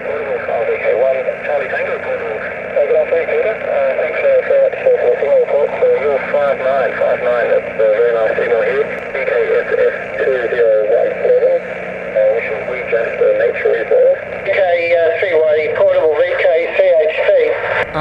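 Single-sideband voice traffic on the 40-metre band coming from a Yaesu FT-817's speaker: thin, narrow-band voices over a steady hiss.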